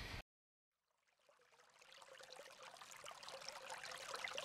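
Near silence at first, then from about two seconds in a faint, crackly, trickle-like noise with a faint steady tone slowly fades in.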